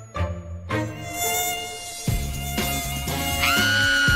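A fly buzzing, a steady drone that jumps higher in pitch about three and a half seconds in, over background music.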